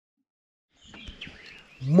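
Dead silence for almost a second, then outdoor ambience with birds chirping faintly. A man starts talking loudly near the end.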